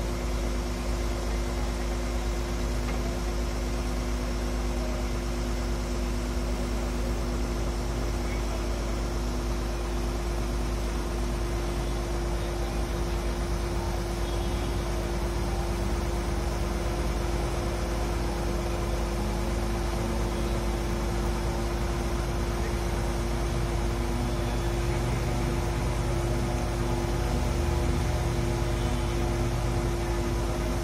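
Truck-mounted mobile crane's diesel engine running steadily with a constant hum while it holds and lowers a slung metro coach, picking up slightly in the last few seconds.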